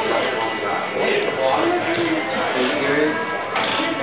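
Several people talking at once in casual conversation, with music playing in the background.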